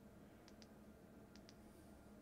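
Faint button clicks on a light bar's small remote control: two pairs of quick clicks, about a second apart, as the light's colour is stepped through, over near-silent room tone.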